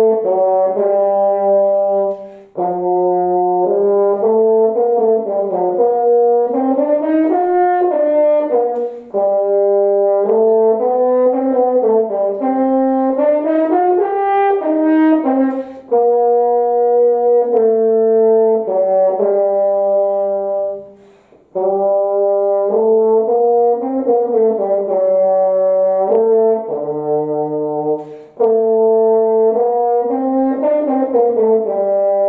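Solo French horn, unaccompanied, playing a melodic passage in phrases of sustained and moving notes. Four or five short pauses for breath split the phrases.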